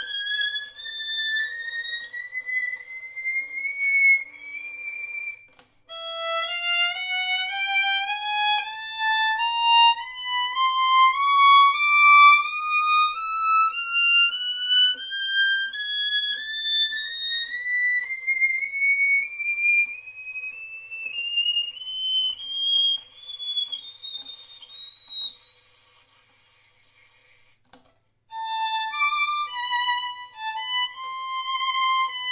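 A 1932 German violin by Karl Niedt played with the bow, its pitch rising steadily for the first few seconds, then after a short break climbing slowly and steadily over about two octaves for some twenty seconds. It stops briefly near the end, then a few quicker notes follow.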